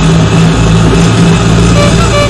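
Vehicle engine running steadily and loudly as a sound effect for a moving vehicle, with music playing alongside.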